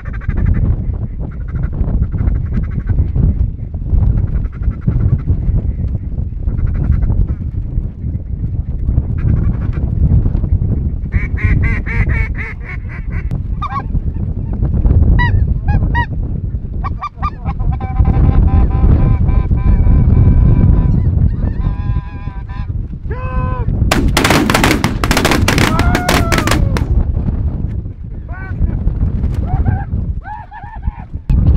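A flock of snow geese calling overhead, many overlapping honks that thicken after the middle, over a steady low rumble of wind on the microphone. A loud, dense burst of noise comes about four-fifths of the way through.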